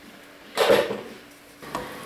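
A wooden spatula stirring through broth and vegetables in a stainless-steel pot, with one short scraping swish about half a second in.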